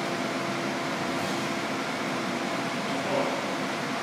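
Steady background room noise, an even hum with no distinct events, and a brief faint sound about three seconds in.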